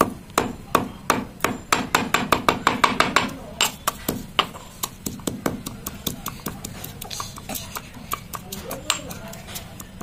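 Pestle pounding whole dry spices and bay leaves in a green stone mortar: a rapid run of sharp stone-on-stone knocks in the first few seconds, then slower, softer strikes from about four seconds in.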